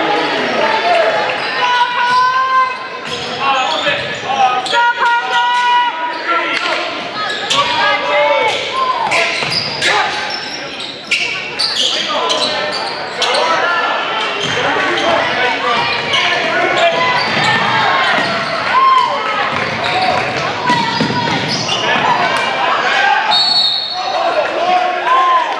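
Live high school basketball play in an echoing gym: a basketball bouncing on the hardwood court, sneakers squeaking, and players' and crowd voices. A short referee's whistle blast comes near the end.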